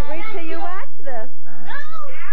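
A young child making two drawn-out, high-pitched wordless calls whose pitch wavers and glides. The first lasts most of the first second, and the second starts near the end.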